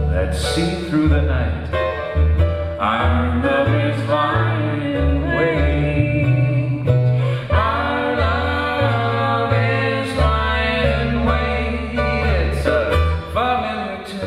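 Jazz-style ukulele and electric cello playing live together: the ukulele plays a busy, shifting melody over a line of separate low notes from the cello.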